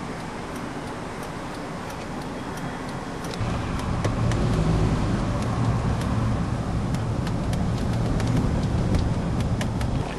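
Road traffic noise: a low vehicle rumble that swells about three and a half seconds in and carries on, with faint scattered clicks over it.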